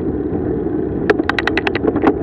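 Wind and road noise rushing over a bicycle-mounted camera's microphone while riding. About a second in comes a quick run of about eight sharp clicks, roughly ten a second, with one more near the end.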